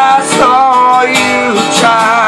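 Acoustic guitar strummed while a man sings long, wavering held notes over it.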